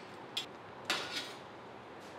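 Fried puris being laid on a brass plate: a light click about half a second in and a softer knock about a second in, as they land on the metal.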